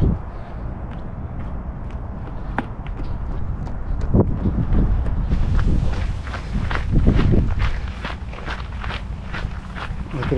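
Running footsteps crunching on a gravel path, a steady stride of short impacts over a low rumble of wind on the microphone.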